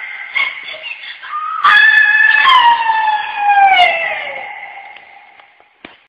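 A woman singing loudly into a microphone in a high, strained voice. Short broken phrases give way, about two seconds in, to one long held note that slides down in pitch and fades out over the next few seconds.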